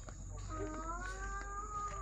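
A faint, drawn-out animal call: one long note that rises slightly and eases back down, starting about half a second in and lasting most of the rest.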